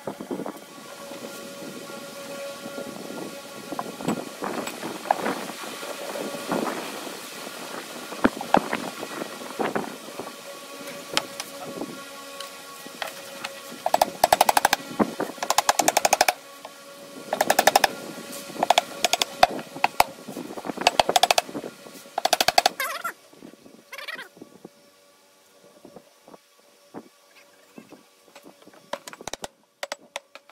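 Rapid bursts of hammer blows on the pine boards of a wooden chest over background music. The loudest, densest runs of strikes come in the middle. Near the end the music fades and only a few scattered knocks remain.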